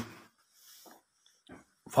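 A pause in a man's speech: his voice trails off, two faint short sounds fall in the gap, and he starts speaking again near the end.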